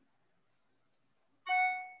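A single electronic chime: one bell-like note that starts suddenly about one and a half seconds in and fades away within half a second.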